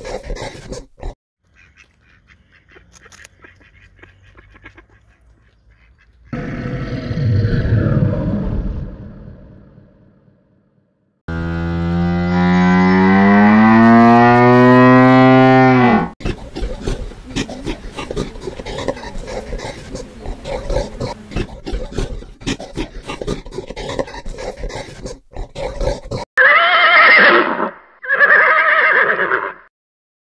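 A run of animal calls: a low growl, then a long deep moo-like bellow whose pitch dips and rises, then several seconds of crackling noise, and near the end a horse whinnying twice.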